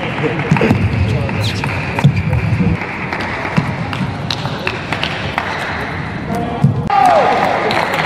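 Celluloid table tennis ball clicking off rubber-faced bats and bouncing on the table during a rally, sharp single clicks every half second to a second, over the murmur of a hall crowd.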